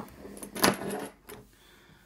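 Metal padlocks and keys clinking and clattering as an opened padlock is put down on a wooden table and a small brass padlock with keys in it is picked up: a sharp click at the start, a louder clatter about half a second to a second in, and one small click after.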